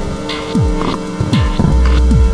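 Electronic music: a deep kick drum dropping in pitch hits about every three-quarters of a second, under steady held synth tones. A low sub-bass note swells in near the end.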